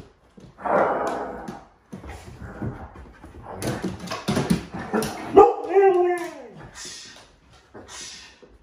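Huskies vocalizing in a run of barks, whines and woo-woo husky 'talking'. A drawn-out call about five and a half seconds in slides down in pitch.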